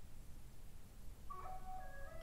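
A quiet pause with only a faint low hum. About a second and a half in, soft background music begins with a few held, steady tones.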